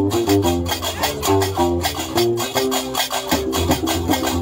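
Gnawa music: a guembri, the three-string bass lute, plucking a repeating bass line under fast, steady clacking of qraqeb iron castanets.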